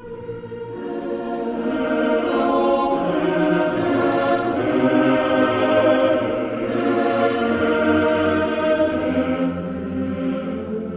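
A choir singing sustained, held chords, swelling in over the first two seconds and then holding steady.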